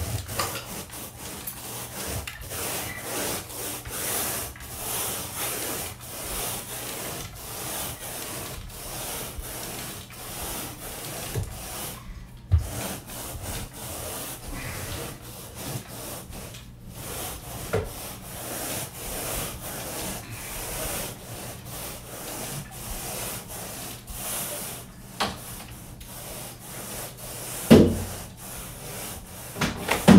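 Carpet grooming rake being pulled back and forth through the carpet pile, a rasping stroke about once a second over a steady low hum. A sharp knock comes near the end.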